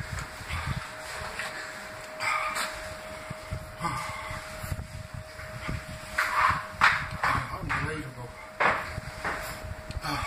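A man breathing hard in irregular, noisy puffs, several loud breaths out with the strongest about six to seven seconds in: the reaction to the burn of a raw Carolina Reaper chilli in his mouth.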